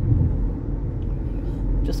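Steady low rumble of road and engine noise heard inside the cabin of a car driving along a highway.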